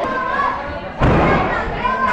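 A wrestler's body hitting the wrestling ring's mat with one heavy thud about a second in, the loudest sound here, over shouting voices from the crowd.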